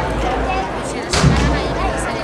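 Deep bass drum beats at a slow, steady march pace, about one every second and a half, with one beat a little over a second in, over the murmur of a crowd.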